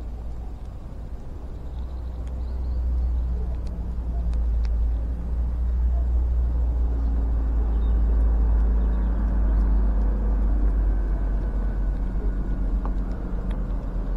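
A steady low engine rumble, as of a motor vehicle running, growing louder over the first few seconds and then holding, with a few faint clicks.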